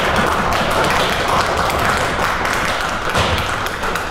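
Audience applauding: dense, steady clapping.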